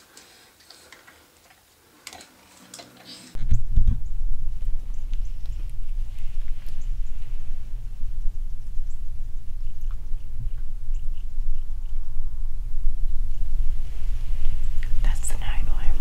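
Near silence for about three seconds, then a sudden, loud, steady low rumble of wind on the microphone inside a pop-up tent blind, with faint scattered ticks and soft whispering over it.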